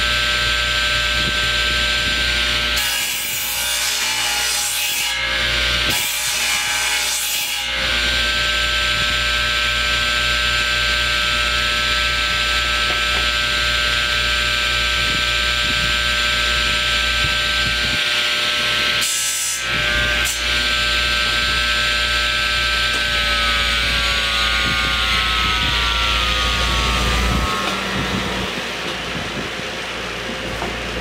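Table saw running steadily, its blade nibbling a fine cut off the end of a wooden bar three times in the first twenty seconds. Near the end the saw is switched off and its hum slides down in pitch as the blade winds down.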